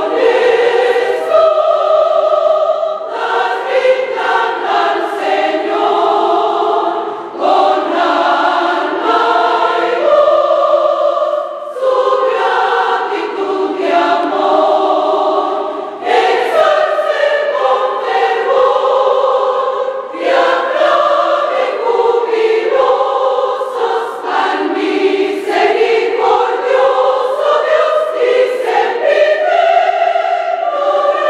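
A choir sings a Spanish-language hymn in several voice parts, in phrases of about four seconds with short breaks between them. The lines heard are 'Naciones todas rindan al Señor, con alma y voz su gratitud y amor' and 'Ensalcen con fervor y aclamen jubilosos al misericordioso Dios y sempiterno Rey'.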